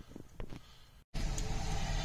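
Low, steady engine and cabin rumble of a vehicle, heard from inside, starting abruptly about a second in. Before it there are only a few faint, short handling sounds.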